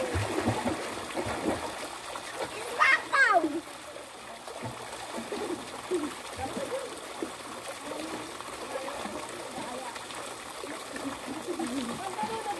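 Pool water splashing and running steadily from the dolphin fountains, under faint, distant chatter of people in the pool. About three seconds in, one short, loud high shout falls in pitch.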